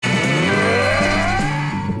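A man's long, drawn-out yell, rising steadily in pitch, over low sustained notes.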